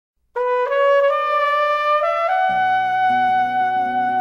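Solo flugelhorn opening a jazz ballad with a short phrase of held notes stepping upward, then holding one long note as acoustic guitar and bass come in about halfway through.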